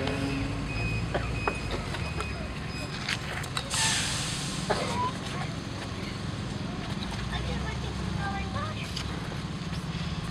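Outdoor crowd ambience: a low steady rumble with faint voices and scattered small clicks, and a short loud hiss about four seconds in.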